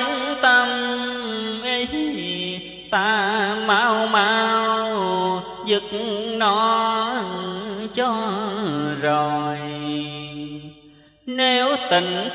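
A man's voice chanting Vietnamese Buddhist verse in a drawn-out melody, holding long notes with a wavering vibrato and sliding between pitches. It fades to a short break near the end before the next line begins.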